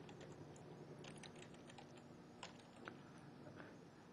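Faint keystrokes on a computer keyboard as a password is typed, a scattering of soft clicks with two slightly louder ones in the second half.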